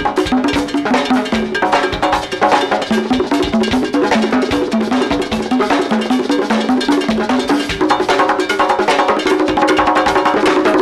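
Live conga solo: fast hand-drumming on a set of congas, the open tones stepping in a repeating pattern between drums of different pitch, with dense sharp slaps and other percussion hits on top.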